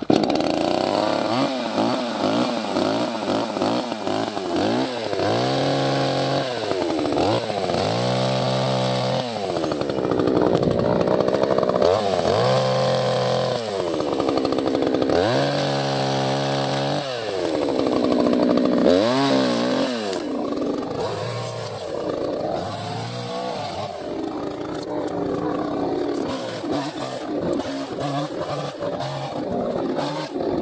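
New Perla Barb 62cc two-stroke chainsaw running and cutting small sticks, its revs rising and falling over and over, then steadier and a little quieter in the last third. The revs are varied and the load kept light on small wood to break in the new engine.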